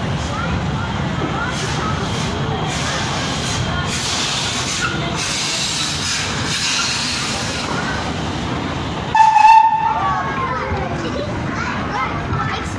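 Small steam locomotive and its freight wagons rolling slowly past, a steady rumble of wheels on rails with voices of onlookers mixed in. About nine seconds in, a short shrill tone lasting about half a second cuts through, the loudest moment.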